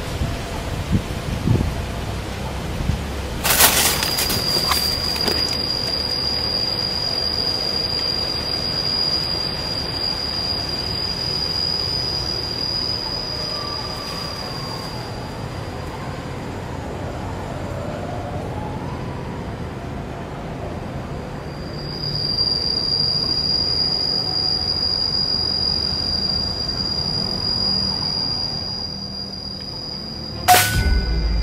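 A single sharp rifle shot about three and a half seconds in, then a steady high-pitched cicada drone that drops out past the middle and returns for the last several seconds.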